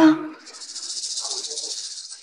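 A woman's voice ends about half a second in. It is followed by a high, fast-pulsing hiss of roughly ten pulses a second, like an insect's trill or a rattle, which runs on steadily.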